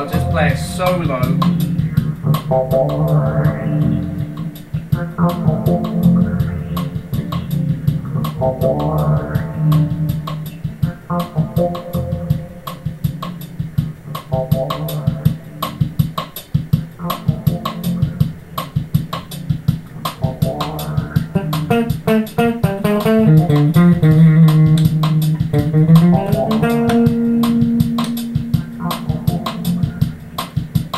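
Five-string Ken Smith Burner electric bass, made in Japan, played over a backing loop with a steady drum beat. A low bass line runs throughout, with sliding notes in the last few seconds.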